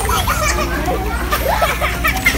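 Several children's voices chattering and calling out over one another.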